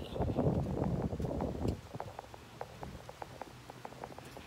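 Wind rumbling on a phone's microphone for nearly two seconds, then dropping away to a quieter background with a string of light, irregular ticks.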